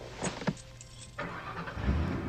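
Car interior sound of a moving car: a low rumble of engine and road noise, with a couple of light clicks near the start and the noise swelling about a second in.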